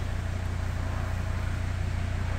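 A steady, unbroken low hum with a faint hiss over it.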